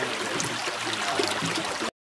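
Shallow creek running over pebbles, a steady gurgling flow, cutting off abruptly near the end.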